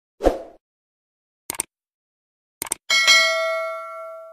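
Subscribe-button animation sound effect: a short thump, then two quick pairs of mouse clicks, then a notification bell that rings out and slowly fades.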